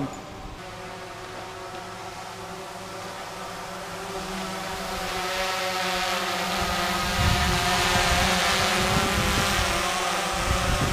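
DJI Phantom 3 quadcopter's motors and propellers humming with a steady, many-toned buzz that grows louder from about halfway through. Some low rumbling wind on the microphone near the end.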